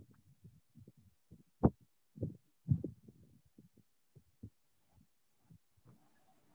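Scattered dull thumps and knocks over a faint low hum, picked up by an open microphone on a video call; the sharpest knock comes about one and a half seconds in, followed by two clusters of thuds.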